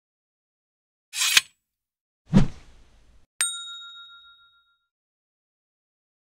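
Animated end-card sound effects: a short hissing swish about a second in, a low thud a second later, then a single bright bell-like ding that rings on for about a second and a half.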